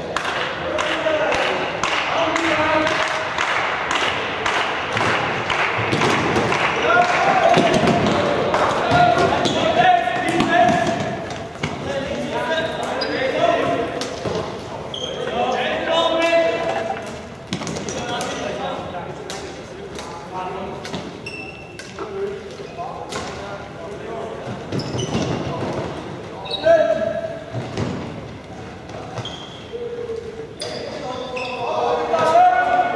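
Floorball play in an echoing sports hall: a steady run of sharp clacks and knocks from plastic sticks and the hollow plastic ball, with players calling and shouting, loudest in the first third.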